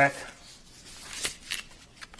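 Sheets of paper being handled and pages turned close to a table microphone: a few brief, sharp rustles, the two loudest a little over a second in.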